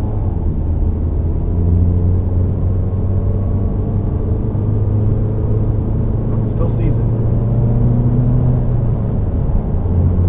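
Inside the cabin of a 2015 Volkswagen Mk7 GTI cruising at night: a steady low drone from its 2.0-litre turbocharged four-cylinder engine, mixed with road and tyre noise.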